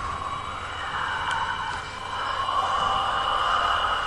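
Eerie intro soundtrack drone: a steady hiss with a faint high whine, swelling slightly about halfway through.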